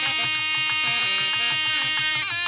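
Nadaswaram playing, its buzzing reed tone held on one long note, over quick, even drum beats.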